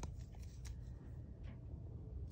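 A small folded slip of paper being unfolded by hand: faint crinkles and a few light crackles of paper.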